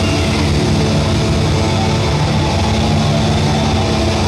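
Heavy metal band playing live: distorted electric guitars and bass in a dense, steady wall of sound, loud throughout.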